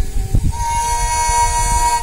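Sarinda, a bowed wooden folk fiddle, played alone: short broken bowed notes, then a steady held note with its overtones from about half a second in.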